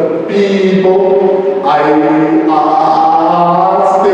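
A man's loud voice in an intoned, sing-song delivery, drawing out long held vowels that step from pitch to pitch, with sharp hissed consonants between them.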